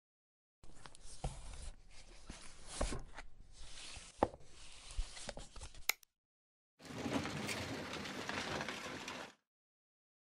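Books being pulled and slid along wooden shelves for about five seconds, with a few sharp knocks among them. After a short pause, a hidden bookcase door swings open with a steady scraping rumble for about two and a half seconds.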